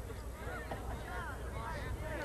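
Several short, distant shouted calls from voices, rising and falling in pitch, over a steady low hum.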